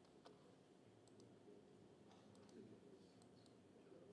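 Near silence: room tone with several faint, scattered clicks from computer mouse and keyboard use.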